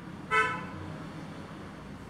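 Whiteboard marker squeaking once, briefly, about a third of a second in, as it writes on the board; after that only a faint low room hum.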